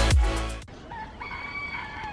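Electronic dance music cuts off abruptly about half a second in. A bird then gives one long call of about a second, higher in the middle and falling at the end.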